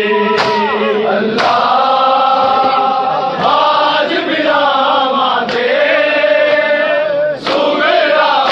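Many men's voices chanting a Punjabi noha (mourning lament) together, with the crowd's open-hand slaps on bare chests (matam) landing together about once a second.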